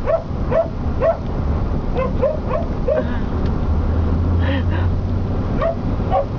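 A dog yipping and whining in quick short rising calls, several in a row with a brief pause about two-thirds of the way through, excited on the ride. Under it runs the steady low hum of the moving vehicle.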